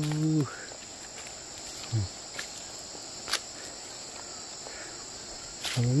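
A steady, high-pitched insect chorus, with a voice trailing off about half a second in and a few faint clicks.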